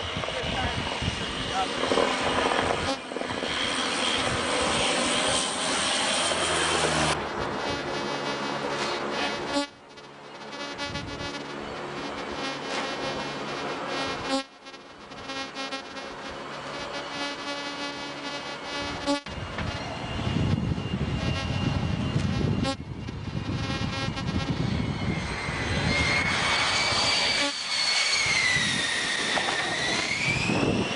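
Aircraft engine noise on a carrier, in several abruptly cut segments. It includes the steady drone of the E-2 Hawkeye's turboprops as it flies past, heard as a set of even, held tones. Near the end comes a high whine that slides down and back up in pitch.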